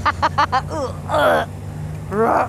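Riders laughing over a helmet intercom above the steady drone of a sport motorcycle engine at cruising speed. There is a string of short laughs at the start and a longer laugh about a second in. The engine note steps up slightly in pitch about half a second in.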